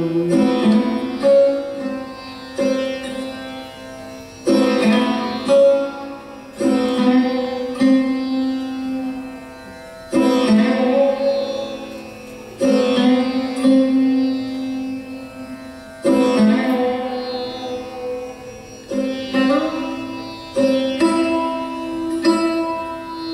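Sarod, a fretless plucked lute with a metal fingerboard, played slowly in Hindustani classical style. Single plucked notes come every second or two, each ringing and dying away, with some notes sliding in pitch into the next.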